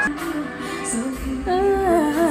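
A woman singing a ballad live with band accompaniment, her voice sliding into a wavering, ornamented run in the last half second.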